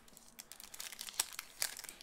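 A hockey card pack's wrapper being torn open and crinkled by hand: a run of quick, sharp crackles.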